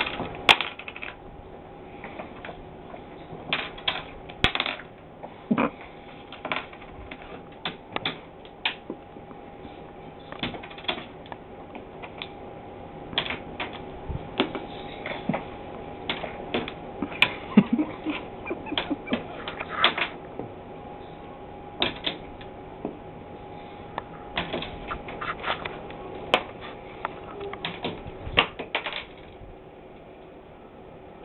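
Irregular sharp clicks and taps, now sparse, now in quick clusters, from a Timneh African grey parrot handling a plastic screw bottle cap on a desk. A faint steady hum runs under them.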